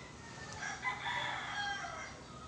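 A rooster crowing once, starting about half a second in and lasting about a second and a half.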